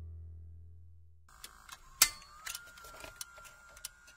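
The song's last low note fades out. From about a second in comes a run of mechanical clicks and ticks over a faint steady whine, with the loudest click about two seconds in.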